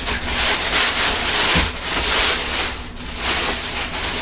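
Tissue paper rustling and crinkling as hands pull it out of a cardboard shoebox. It goes on in bursts, with short lulls about a second and a half in and again about three seconds in.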